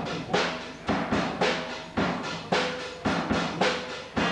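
Drum kit played alone in a steady beat, with strikes about every half second.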